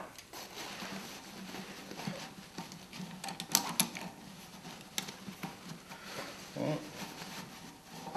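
Cloth filter bag rustling as it is worked over the dust collector's outlet, with a few light metallic clicks from the steel band clamp being fitted around it, the sharpest a little after halfway and again about five seconds in.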